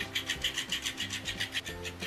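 Electric flopping-fish cat toy switched on, its motor flapping the fabric fish in a quick, even rasping rhythm of about seven strokes a second. Soft background music runs underneath.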